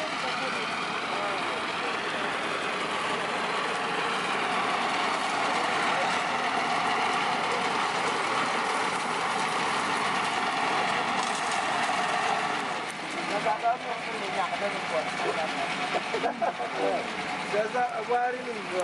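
A motor running steadily for about the first thirteen seconds, then dropping away as people's voices take over.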